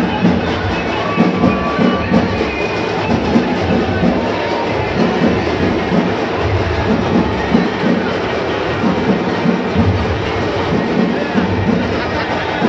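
Dense crowd noise with steady rhythmic drum beats running through it.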